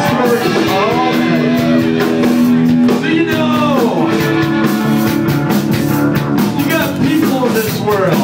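Live rock band playing loud: electric guitar and drums with a voice singing over them.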